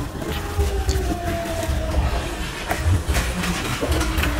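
Close-miked eating sounds: a mouth chewing rice and fish curry, with irregular low rumbling bursts and small wet clicks, and fingers mixing rice on a brass plate.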